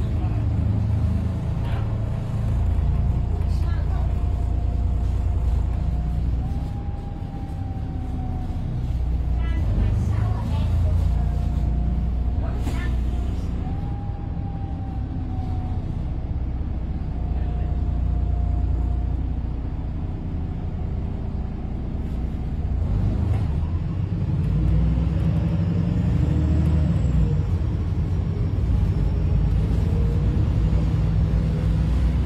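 Cabin sound of a VDL SB200 Wright Pulsar 2 single-deck bus under way: a continuous low engine and road drone with a faint whine that shifts slightly in pitch, and a few short knocks and rattles from the body.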